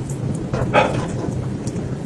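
Close-up eating sounds: noodles lifted from a bowl with chopsticks and chewed, a steady rough noise with a brief hiss about three-quarters of a second in.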